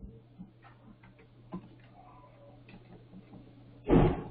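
Computer keyboard keys being typed, a few scattered clicks, over a steady low electrical hum, with one louder knock near the end.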